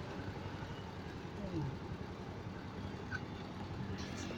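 Street traffic noise, a steady low rumble of vehicles on a city road.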